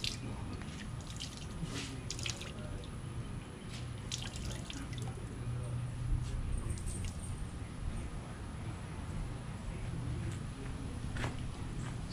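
Water dripping and trickling from a wet cotton T-shirt back into a plastic tub as it is lifted out and wrung.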